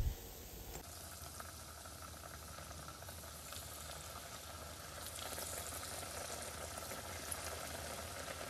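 Falafel patties deep-frying in hot oil: a steady, faint bubbling sizzle that grows a little louder about five seconds in.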